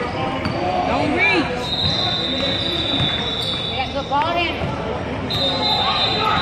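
Basketball game in a gym: a ball dribbling and sneakers squeaking on the court over background voices, in a large echoing hall. A steady high-pitched tone sounds for about two seconds in the middle and starts again near the end.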